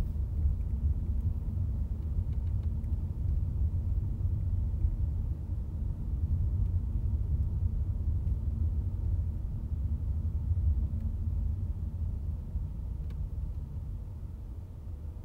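Low, steady rumble of a car driving, road and engine noise heard from inside the moving vehicle, easing off near the end as the car slows to a stop.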